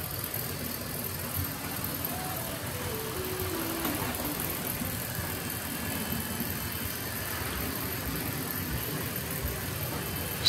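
Tri-ang Hornby 00-gauge model train running on the layout: a steady motor hum and the rumble of wheels on track.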